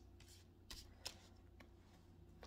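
Near silence, with a few faint soft ticks of tarot cards being handled, the clearest about a second in.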